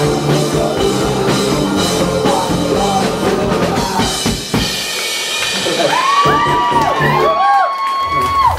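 Live rock band playing, with drum kit and singing. About halfway through, the drums and bass drop out, leaving a high line that swoops up and down in pitch. The full band comes back in at the very end.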